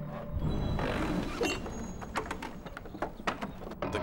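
Background music over a wooden counterweight trebuchet firing: a heavy low rumble about half a second in as the stone-weighted counterweight box drops, followed by a run of short wooden knocks and rattles as the arm swings through.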